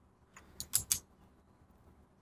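Four or five quiet clicks of a computer mouse and keyboard in quick succession within the first second, as a drawing tool is picked and a circle is dragged out.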